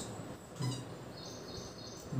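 A felt-tip marker squeaking briefly and faintly on a whiteboard as a figure is written, over quiet room tone.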